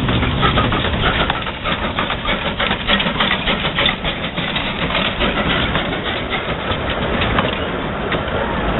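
Narrow-gauge steam locomotive running past close by with its coaches: a dense, irregular clatter of wheels and running gear over a low rumble.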